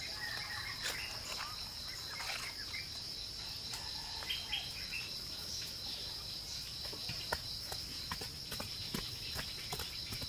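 Steady high-pitched drone of insects (crickets or cicadas), with scattered short clicks and taps and a few brief bird chirps.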